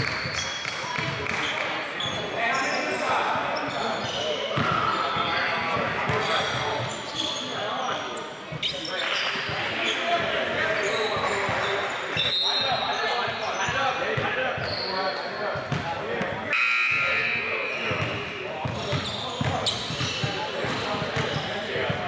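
Indistinct voices of players and officials echoing around a gymnasium, with a basketball bouncing now and then on the hardwood floor.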